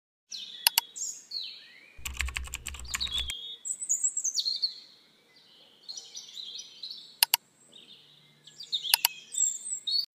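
Animated subscribe-button intro sound effects: high chirping, whistling glides and sharp mouse-like clicks, with a quick run of typing-like clicks over a short low hum about two seconds in.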